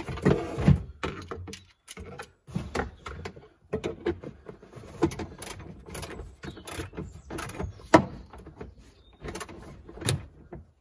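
Hand socket wrench ratcheting and knocking as a seat belt anchor bolt is tightened by hand in a cramped car interior: irregular clicks and knocks of metal and plastic, with one sharp knock about eight seconds in.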